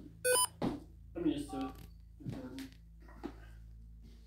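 A quick electronic beep from a handheld device: a burst of stepped tones lasting about a quarter of a second, just after the start. Low, indistinct voices follow.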